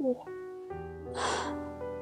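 A man's sharp, shaky in-breath about a second in as he holds back tears, over soft background music of held piano-like notes.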